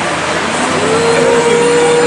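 Loud crowd din from a live audience reacting to a joke on stage. Under a second in, a long steady held tone begins, like a single voice holding one note.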